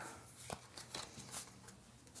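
Faint handling of a small stack of Pokémon trading cards: cards slid and flicked from the back of the pack to the front, with a few light ticks of card against card.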